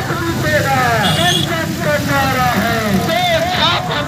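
A rally of motorcycles running past at low speed, their engines making a continuous rumble, with several voices calling out over them in rising-and-falling shouts.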